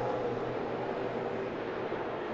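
NASCAR Cup Series stock car's V8 engine running at speed down a straightaway, heard as a steady drone through TV broadcast audio.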